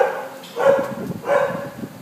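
A dog barking repeatedly, three barks evenly spaced about two-thirds of a second apart.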